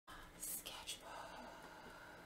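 A woman whispering softly, with two short hissing 's' sounds in the first second.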